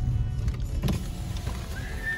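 A car's electric power window motor running as the side window is lowered, over the low rumble of the car. There is a sharp click about a second in.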